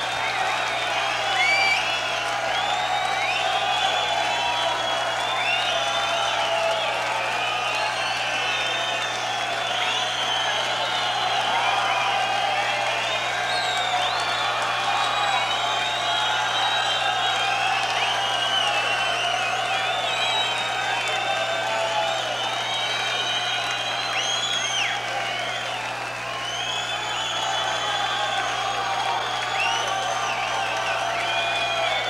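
Concert audience cheering, whooping and whistling, with shrill whistles rising and falling throughout over a steady low hum, calling for an encore at the end of the set.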